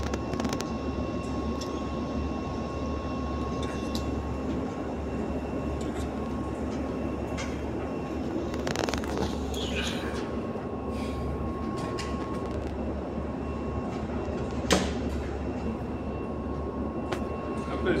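Switched-on two-group espresso machine humming steadily, a low drone with a faint steady tone over it. A single sharp click comes about fifteen seconds in.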